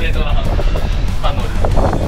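A man's voice over background music, with low wind rumble buffeting the action-camera microphone.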